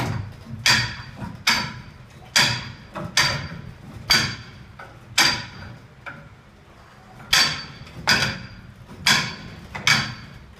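Hand-held training rings knocking against a steel scaffold pipe as they are hopped along it one at a time. Each hop gives one sharp clank with a brief metallic ring, about one a second, with a pause of about two seconds a little after the middle.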